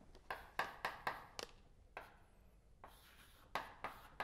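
Chalk writing on a blackboard: sharp taps and short strokes as each mark is made, a quick run of five in the first second and a half, a single one at about two seconds, and two more near the end.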